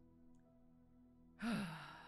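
A person's long, audible sigh about one and a half seconds in, over faint steady background music.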